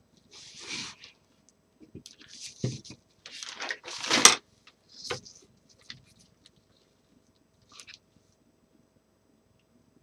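Burlap fabric rustling and crinkling in irregular bursts as it is handled and pressed onto a wire lampshade frame, with a sharp knock a little after four seconds.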